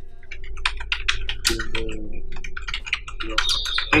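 Typing on a computer keyboard: a fast, uneven run of key clicks as a name is typed in.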